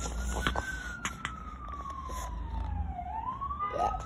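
An emergency-vehicle siren wailing: a single tone that falls slowly for about three seconds and then rises again near the end.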